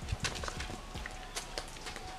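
A few soft, irregular taps and rustles from a person shifting her feet and moving as she turns around, with a faint steady tone underneath.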